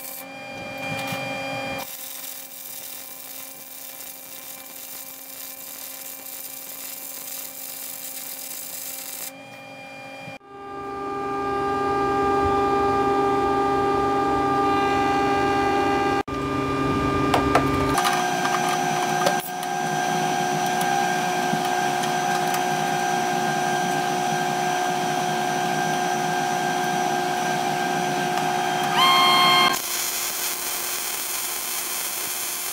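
MIG welding: the welder's steady buzzing hum under the crackle of the arc, cut into several segments that change abruptly.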